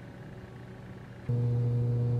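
Faint room tone, then about a second in a steady low hum starts abruptly and holds on without change.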